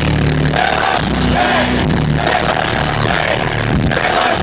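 Loud live concert music over a PA, with heavy sustained bass notes, picked up by a phone from within the crowd.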